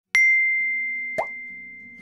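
Editing sound effects over soft background music: a bright chime rings out and slowly fades, and about a second in a short pop with a quick rising pitch sounds.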